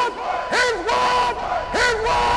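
Soundtrack of a closing logo animation: a series of loud calls on one pitch, each starting sharply, held briefly, then sliding down, about three in two seconds.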